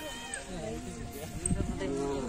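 People's voices talking, more than one speaker overlapping, with no clear non-speech sound standing out.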